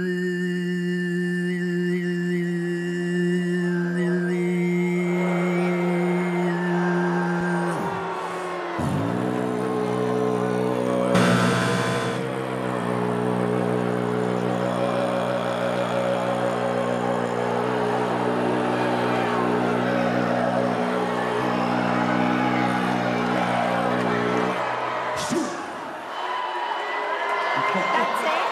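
Tuvan throat singing: a man's voice holds a low droning note with whistling overtones above it, breaks off about 8 s in, then resumes with a second long drone that stops about 25 s in. Audience noise rises over the singing, with a loud burst of crowd sound about 11 s in.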